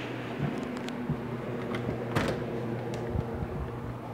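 Rubbing and clicking of a phone being handled while carried, with one louder knock about two seconds in, over a steady electrical-sounding hum.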